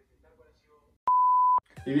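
A steady high-pitched censor beep, a single pure tone lasting about half a second, starting about a second in and cutting in and out with a click at each end.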